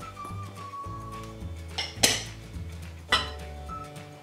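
Two sharp clinks of glass bowls knocking together about a second apart, as a small glass prep bowl is emptied over a glass mixing bowl, over steady background music.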